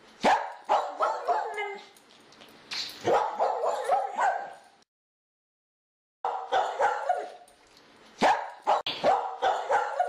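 A dog's short, high-pitched yips and barks in quick clusters of calls, loudest near the start and again late on, broken by a sudden cut to dead silence for about a second and a half near the middle.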